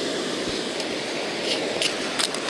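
Small surf washing up over wet sand in a steady rush.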